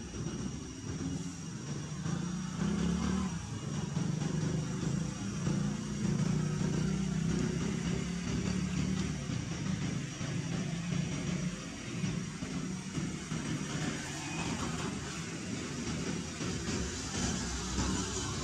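Steady low motor rumble, like a vehicle engine running, with a thin steady high tone above it.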